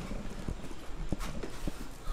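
A few short, irregularly spaced knocks and taps on a hard surface.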